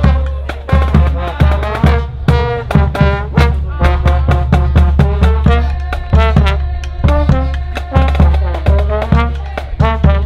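Small brass band playing live: trombones and trumpets over a bass drum keeping a steady beat.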